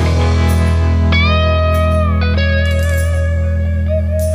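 Psychedelic hard rock instrumental passage: a guitar plays sustained lead notes that bend and waver in pitch over a low bass note held throughout.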